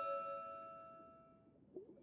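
A held chord of cartoon background music rings out and fades away over about a second and a half, leaving near silence.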